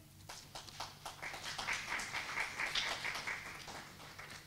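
Scattered audience applause: many light, irregular hand claps that thin out toward the end.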